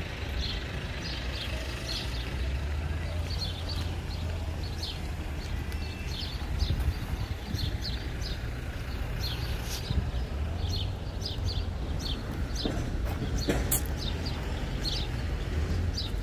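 Outdoor street ambience: small birds chirping over and over in short high notes, about one every second or so, over a steady low rumble. Near the end the chirps come faster and there are a few sharp clicks.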